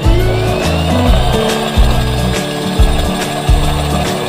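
Electric drill spinning up with a rising whine, its diamond hole-saw bit grinding into a wet glazed ceramic bowl. Background music with a steady beat plays over it.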